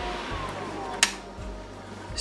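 COMLIFE F-150 mini fan running on USB power with a steady hum; a sharp click about a second in, after which the hum gets quieter and its tone falls as the fan winds down.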